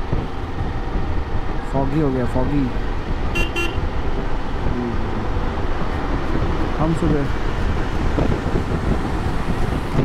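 Steady rush of wind and engine and road noise heard from a motorcycle riding at highway speed among traffic, with a short vehicle horn toot about three and a half seconds in.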